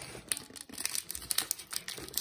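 Crinkling of a card-backed plastic blister pack of trading-card boosters being handled and pried open, with several short, sharp crackles scattered through.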